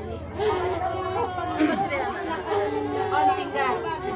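Several voices talking over one another in a low, overlapping chatter, with no single clear speaker.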